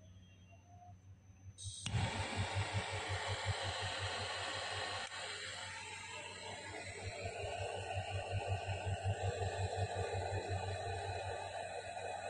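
Butane jet torch lighter lit about two seconds in, its jet flame hissing steadily with a fast low flutter underneath.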